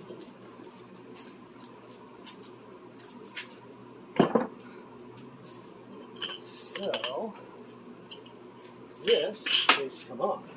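Metal clinks and clanks as a propane hose fitting is handled and connected to the valve of a propane tank. There is one sharp knock about four seconds in, more clinking around seven seconds, and the loudest clanks near the end.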